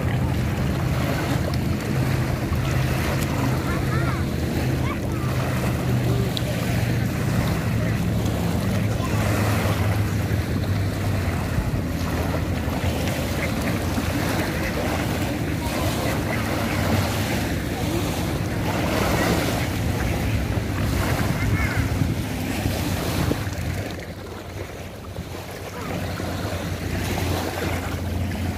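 Wind buffeting the microphone with a steady low rumble over small waves lapping on a sandy lake shore; the rumble eases near the end.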